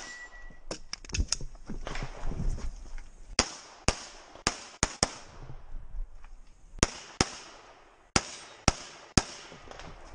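Glock 34 Gen5 9mm pistol firing fast strings of shots, mostly in quick pairs about a third to half a second apart, a dozen or so in all. After the first second there is a pause of about two seconds before the pairs resume.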